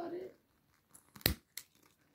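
A handheld lighter being struck while lighting birthday candles: one sharp click about a second and a quarter in, then a fainter one, after a brief low murmur of voice at the start.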